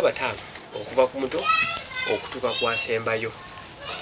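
Speech only: people talking, with children's voices among them.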